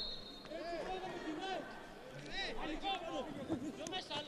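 Faint shouts and calls of football players on the pitch, with no crowd noise behind them.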